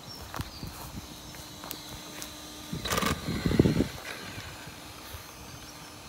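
A sharp knock about three seconds in, followed at once by a short, loud grunt-like vocal sound lasting under a second.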